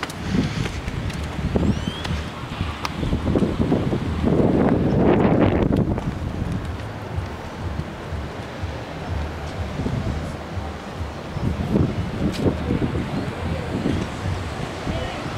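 Wind buffeting a handheld camera's microphone as a low rumble, with a stronger gust about four to six seconds in.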